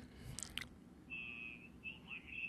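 Faint background room tone with a thin high-pitched tone coming and going, and a brief faint rustle about half a second in.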